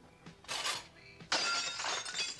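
Glass shattering in the film's soundtrack: a short crash about half a second in, then a louder, longer one with ringing shards just past the middle.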